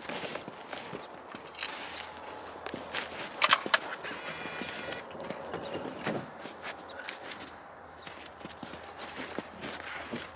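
Footsteps crunching and shifting in snow as a shooter settles behind a tripod-mounted rifle. Two sharp clicks come about three and a half seconds in, followed by a brief high tone.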